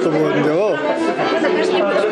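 Speech: a man talking in a room, with the chatter of other voices around him.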